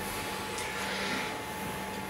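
Steady, faint room hum with a constant low tone, like a fan running.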